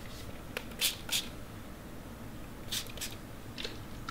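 Trigger spray bottle misting water onto seed-starting mix: about four short hissing squirts in two quick pairs, with a fainter one near the end.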